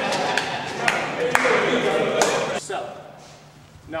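Men laughing, with four sharp smacks in the first couple of seconds.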